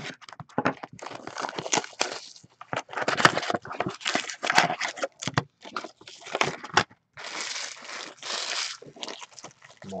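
Foil trading-card pack wrappers and plastic packaging crinkling and tearing in irregular bursts as hockey card packs are handled and opened.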